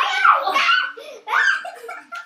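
Young children laughing loudly, in two bursts of high-pitched laughter, the second starting a little over a second in.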